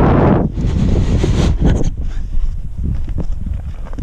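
Wind buffeting the camera microphone: a steady low rumble with two louder rushing gusts, one at the start and another lasting about a second soon after.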